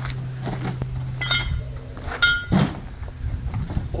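Fibreglass beach buggy body shell being lifted off a VW Beetle chassis: two short squeaks of the shell about one and two seconds in, then a loud thunk as it is set down.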